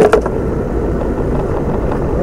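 Steady low rumble of a car cabin with the engine running, with a sharp click or two right at the start.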